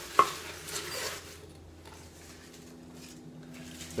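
Chopped leafy greens being packed by hand into a plastic blender cup: a sharp knock just after the start, then soft rustling of leaves that dies away about a second in, leaving a faint steady hum.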